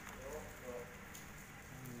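Faint steady rain, an even hiss of rainfall, with faint voices in the background.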